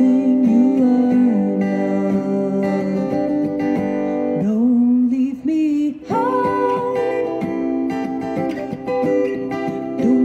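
A woman singing with her own strummed acoustic guitar, holding long sustained notes. Her voice breaks off briefly a little past halfway, then comes back on a higher held note over the guitar.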